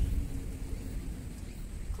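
Outdoor background ambience: a low, steady rumble with no distinct events.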